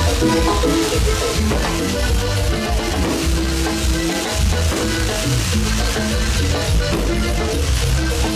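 Live Panamanian típico band music: a button accordion plays the lead over electric bass and hand percussion, with a steady beat.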